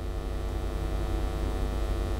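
Steady electrical hum with many even overtones and a low rumble underneath, the background of an amplified hall during a pause in speech.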